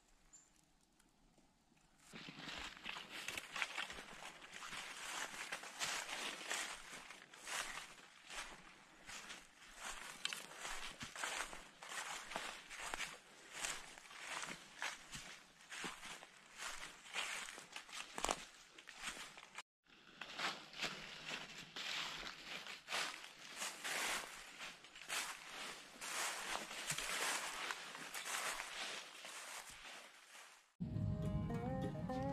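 Footsteps crunching through thick dry leaf litter: a continuous run of crackling rustles that starts about two seconds in, with a momentary gap about two-thirds of the way through.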